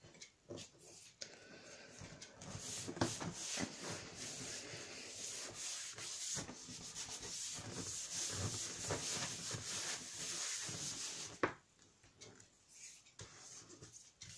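Palms rubbing over freshly glued patterned paper to press it flat onto a cardboard album page: a papery scraping in repeated strokes. It stops with a sharp tap about eleven and a half seconds in.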